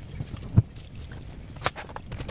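Two dull knocks on a kitchen counter about a second apart, the second as a kitchen knife cuts down through an onion onto a plastic cutting board.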